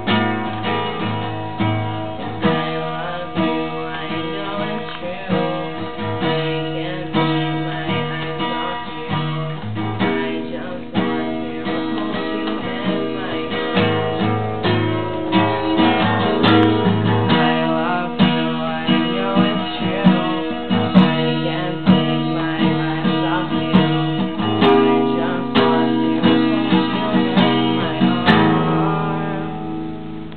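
Solo acoustic guitar playing an instrumental passage of strummed and picked chords, dying away near the end.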